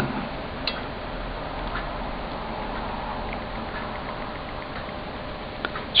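Steady low hiss with a handful of faint small ticks from metal tweezers and a soldering-iron tip touching a circuit board while a tiny surface-mount transistor is soldered in place.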